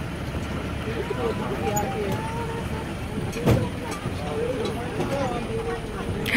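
Tractor engine pulling a hayride wagon, a steady low rumble, with faint chatter from other riders over it. A single knock sounds about three and a half seconds in.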